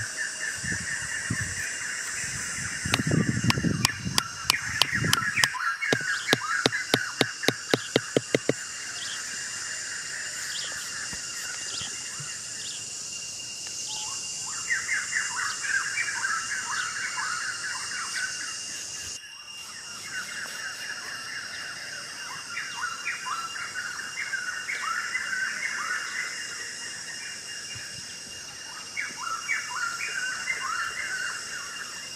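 Outdoor countryside ambience: birds chirping in quick repeated notes, over a steady high insect drone. A few seconds in comes a rapid run of sharp clicks, about four a second, lasting some five seconds.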